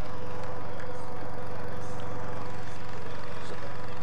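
Steady engine drone of the race motorcycles travelling with the bike race, an even hum that holds without change.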